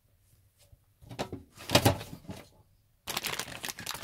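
Bait bottles and pots on a table being knocked about and gathered up, clattering. There are two bursts of clatter: one about a second in, and a busier one near the end.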